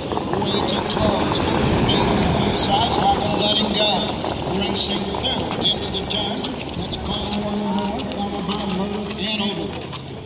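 A field of harness-racing horses and their sulkies passes close by on the dirt track, with hoofbeats and wheels loudest in the first few seconds and then fading as they move away. Indistinct voices sound underneath throughout.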